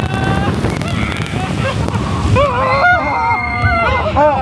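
Riders screaming on a log flume's drop, several long wavering screams coming in about halfway through. Under them runs a steady rush of water and air.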